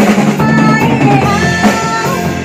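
Live band playing a song: a woman singing into a microphone over electric bass and a drum kit.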